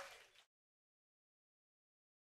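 Silence: the last of the sound fades out within the first half-second, then there is no sound at all.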